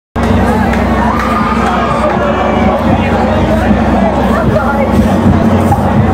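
Concert crowd shouting and chattering between songs, many voices overlapping, over a steady low hum.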